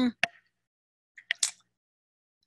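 A woman's voice trailing off in a thinking "mm", then a small mouth click, silence, and a couple of short breathy mouth noises about a second and a half in.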